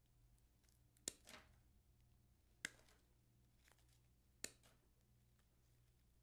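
Hand-held wire cutters snipping through the wired stems of artificial leather fern: three sharp snips about a second and a half apart, with a few faint ticks from handling between them.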